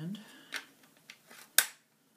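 Plastic parts of a weather station receiver clicking as they are handled and fitted together: a few light clicks, then one sharp loud snap near the end.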